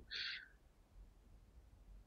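A brief soft intake of breath just after the start, then near silence.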